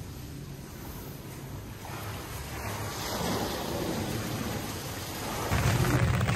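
Thunderstorm: steady rain with a low rumble of thunder that swells from about two seconds in, the rain growing louder near the end.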